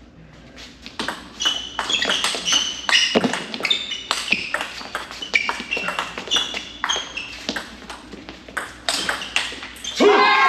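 Table tennis rally: the ball clicking off the bats and bouncing on the table in quick alternation, about two to three hits a second, from about a second in until it stops near the end.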